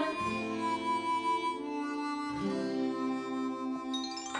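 Background music of long held notes with a reedy tone, moving to a new set of held notes about two and a half seconds in.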